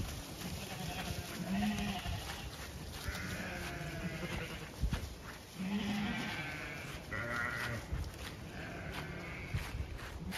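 Zwartbles sheep bleating as the flock moves along, about half a dozen calls spaced a second or two apart.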